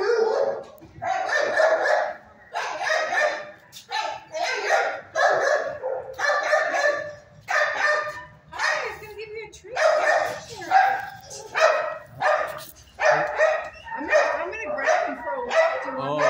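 Dogs barking repeatedly in a shelter kennel, loud bark after bark at about one a second.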